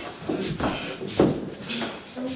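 Shuffling footsteps on a floor, a few short knocks and background voices in a room.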